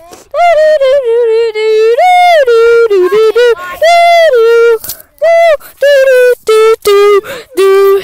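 A voice singing a wordless 'do, do, do' tune: a run of short and held notes that rise and fall, some with a slight waver.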